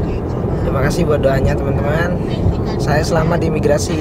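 Steady road and engine rumble inside the cabin of a moving passenger van, under a man talking.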